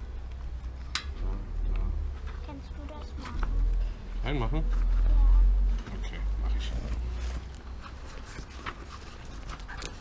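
Bicycle inner tube being tucked by hand into a tyre on the rim, close to the microphone: rubbing and light clicks, under a deep rumble that swells to its loudest about five seconds in.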